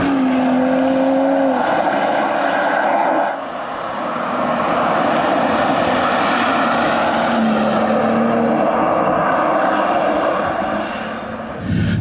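BMW M240i with its B58 turbocharged straight-six driving past at speed, engine and tyre noise heard in two passes: the first cuts off about three seconds in, the second runs on until just before the end.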